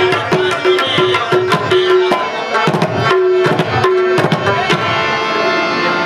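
Live Pashto folk music: tabla played in a fast, even rhythm, its ringing right-hand drum tone repeating, over rabab accompaniment. The drumming stops near the end while sustained instrument notes ring on.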